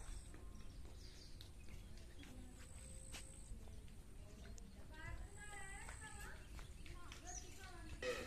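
Faint distant voices about five seconds in, over a low rumble of wind on the microphone in an open field; a faint high thin tone comes and goes a few times.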